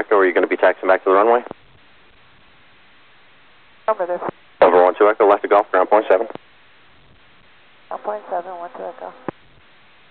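Air traffic control radio on the tower frequency: voices transmitting over the VHF airband, thin and narrow-sounding, in three short transmissions with faint hiss in the gaps between them.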